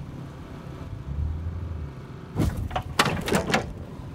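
Dodge Neon plow car being towed backward off its homebuilt steel plow blade: a brief low drone about a second in, then a cluster of knocks and scrapes near the middle and a longer run of clunks about three seconds in as the car comes free of the blade.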